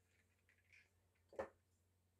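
Near silence with faint handling of small plastic e-liquid bottles and one short knock about one and a half seconds in, as of a bottle set down on the mat.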